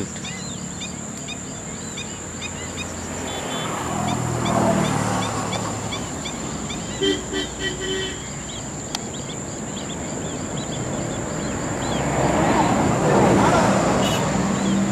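A flock of black-winged stilts calling, many short high notes overlapping throughout, over a steady low rumble of distant traffic that swells about four seconds in and again near the end.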